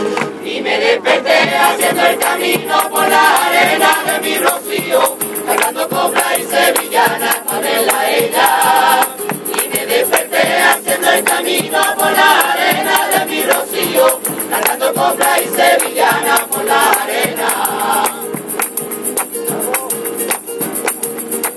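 A rociero choir singing a sevillana rociera in chorus over rhythmic hand-clapping and small percussion. The voices break off briefly in the middle and stop near the end, while the clapping and percussion keep going.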